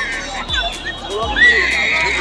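A baby crying in high, wavering wails, one cry held longer near the end.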